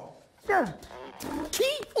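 Cartoon animal characters' voices: a short falling cry about half a second in, then further brief vocal sounds and a spoken word near the end.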